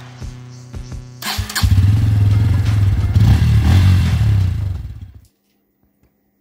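Background music, then a motorcycle engine starting about a second in and running loudly for about four seconds before it fades and cuts off suddenly.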